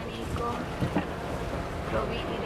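Outdoor waterfront ambience: wind rumbling on the microphone over faint, scattered background voices.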